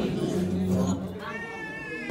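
A low voice in the first second, then a short high-pitched cry with a wavering, slightly falling pitch about a second in.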